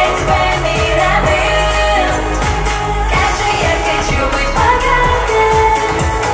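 A woman singing a pop song into a handheld microphone over amplified music with a steady beat, heard through a concert sound system.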